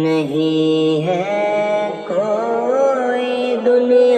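Devotional naat-style song opening with a chant-like sung line: long held notes that slide and waver in pitch.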